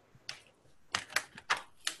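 A quick run of sharp clicks or taps, about five in under two seconds, close to the microphone.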